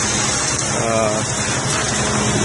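Concrete pump truck's engine running steadily, with a steady rushing hiss as concrete is pumped through the hose into the foundation wall forms.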